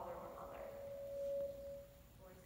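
A single steady ringing tone, swelling to its loudest about a second and a half in and stopping near the end, after the tail of a woman's speech.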